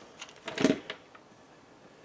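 Paper and cardstock being handled on a countertop: one short rustle with a knock about half a second in, then only faint rustling.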